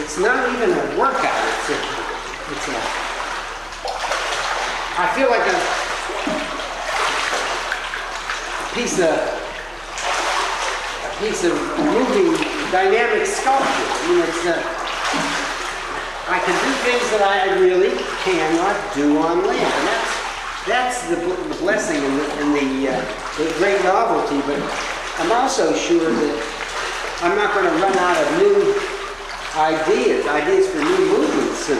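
Pool water splashing and churning as plastic gallon jugs are pushed and swung through it underwater. An indistinct voice is heard over it, more in the second half.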